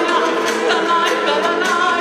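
A woman singing lead with a live band, holding long, wavering notes over guitar, keyboard and percussion hits.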